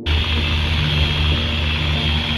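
Electric car polisher (buffer) running steadily against a car's paint, a loud motor drone that starts suddenly.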